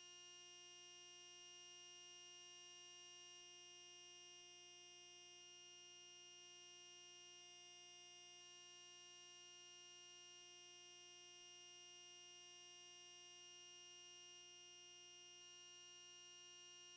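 Near silence: only a faint, steady electronic hum made of several held tones, unchanging throughout.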